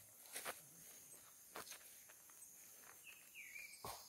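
Near silence: a few faint footsteps and rustles on loose dug earth and leaf litter, with a brief falling chirp about three seconds in.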